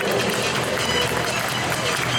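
Echoing stadium public-address voice over a steady wash of crowd and venue noise.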